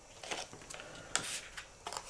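Paper and black card stock rustling and scraping as hands lift and turn over the card: a few short rustles, the longest a little past a second in.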